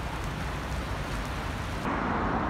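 Steady hiss of rain on a wet city street, with a low traffic rumble underneath. It changes abruptly near the end, the hiss thinning out.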